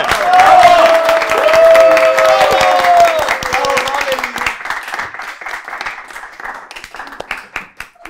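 A small group of adults and children clapping by hand, with several voices calling out in a long held cheer over the first three seconds. The clapping is loudest early and thins out toward the end.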